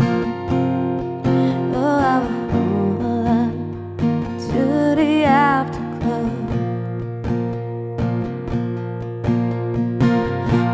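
A woman singing long held notes with vibrato over a steadily strummed acoustic guitar. The voice drops out after about six seconds, leaving the guitar strumming alone.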